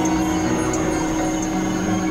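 Layered electronic music holding a steady drone of sustained tones, with a thin high tone above it and faint ticks about every two-thirds of a second.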